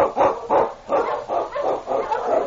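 Husky sled dogs barking in quick, repeated barks, about three or four a second, as a sound effect in a 1940s radio drama recording.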